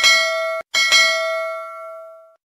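A bell notification sound effect rung twice. The first ring is cut short after about half a second, and the second rings on and fades away. It is the chime of a subscribe-button bell being clicked.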